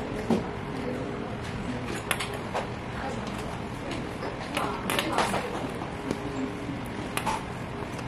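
Cables being handled and bullet connectors being pushed together: a few sharp clicks and knocks spread over the seconds, with rustling between them. Faint voices can be heard in the background.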